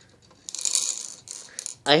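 Clear plastic bead-filled rattle roller on a Baby Einstein Count & Compose Piano toy, turned by hand so the beads inside rattle. It starts about half a second in and stops just before the end.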